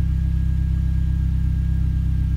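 Hyundai Genesis Coupe's turbocharged 2.0-litre engine idling steadily at about 1,000 rpm, heard from inside the cabin as an even, low-pitched drone.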